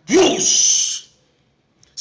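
A man's voice imitating hot oil flaring up when paste is thrown into it: a short voiced burst that slides into a sharp hiss of about a second, stopping abruptly.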